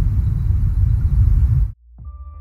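Burst of loud static noise with a heavy low rumble, a glitch transition effect under a title card, cutting off suddenly near the end.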